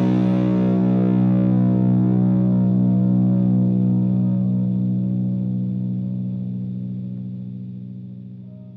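Rock music: a held, distorted electric guitar chord with effects ringing out and slowly fading away, the high end dying first.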